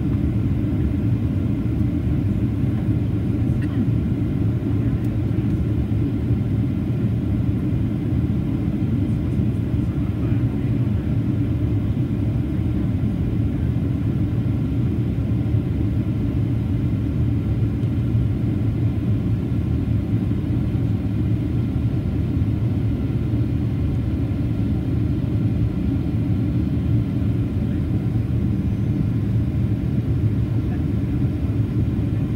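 Steady low rumble of a Boeing 737-800's CFM56-7B turbofan engines and airflow, heard inside the passenger cabin beside the wing.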